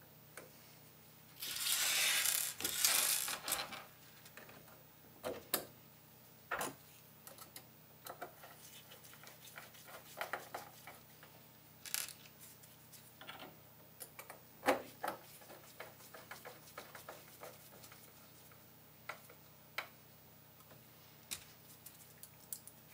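Handling noise on a workbench: a loud rustling scrape about two seconds long near the start, then scattered light clicks and taps of small metal parts and the resin-vat frame being handled.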